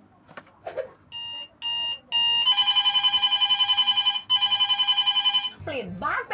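Electronic telephone-style ringing tone: three short beeps about half a second apart, then two long trilling rings, each over a second.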